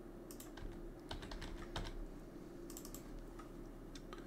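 Computer keyboard keys clicking: a few scattered key presses, with a quick run of them between about one and two seconds in, over a faint steady hum.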